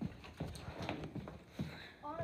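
Running footsteps on a hardwood floor: a quick series of thuds, about two or three a second.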